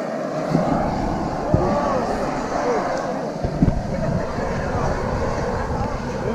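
Indistinct voices of people talking over a steady rushing noise, with a low rumble that cuts in suddenly twice.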